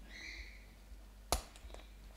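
Washi tape being pulled off its roll with a short, faint rasp, then one sharp click a little over a second later as the strip is handled and pressed onto the paper.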